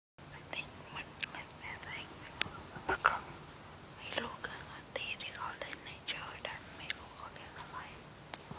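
Whispering, broken by sharp clicks, the loudest about two and a half and three seconds in.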